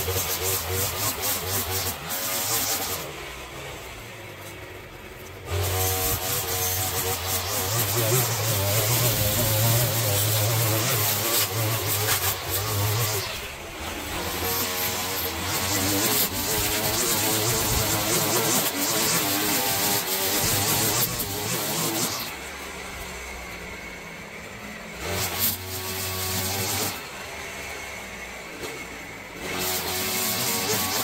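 String trimmer cutting long grass, its motor speeding up and easing off several times, with short quieter spells where it is let off.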